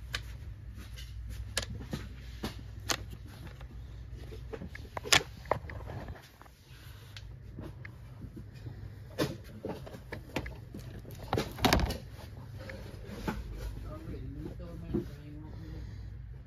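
Irregular clicks and knocks from a plastic shopping basket being carried and handled, its handles clattering against the rim, with two louder knocks about five and twelve seconds in. A low steady hum runs underneath.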